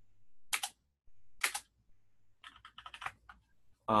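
Computer keyboard keystrokes: two single key presses, then a quick run of about ten keys.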